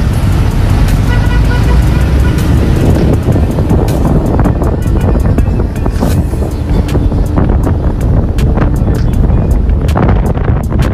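City road traffic: vehicle engines and tyre noise in a steady low rumble, with music playing alongside.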